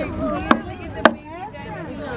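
Two sharp clicks about half a second apart, over people's voices in the background.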